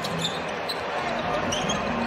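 Basketball being dribbled on a hardwood court, with steady arena ambience behind it.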